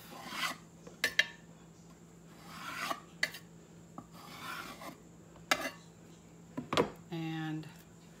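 A flat scraper dragged across a small canvas, scraping off wet acrylic pour paint in a few rough scraping strokes, with several sharp clicks among them.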